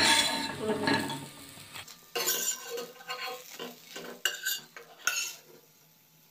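A spatula scraping the bottom of a non-stick frying pan and knocking against a stainless steel plate as fried fritters are lifted out. A sharp clank right at the start is the loudest sound, followed by a few scattered scrapes and clinks.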